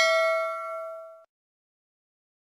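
A bell-like ding sound effect, the notification-bell chime of a subscribe animation. It rings with several clear overtones and fades out a little over a second in.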